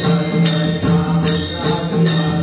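Varkari devotional bhajan: voices chanting over a harmonium's held notes and a two-headed drum, with hand cymbals (taal) clashing in a steady beat about twice a second.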